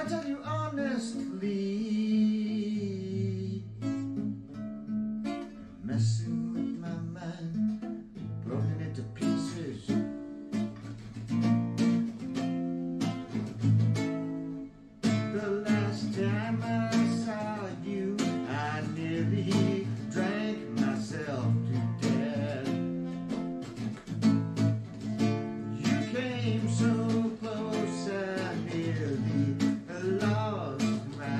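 Classical guitar with nylon strings playing a tune, with a brief break about halfway through.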